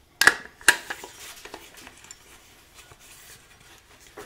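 Thunder Beast bipod's machined metal clamp being fitted onto a 1913 Picatinny rail: two sharp metallic clicks about half a second apart near the start, then lighter clicks and rattles as it is seated.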